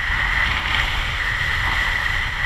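Kiteboard skimming across choppy water with a steady hiss, over low buffeting of wind on the microphone.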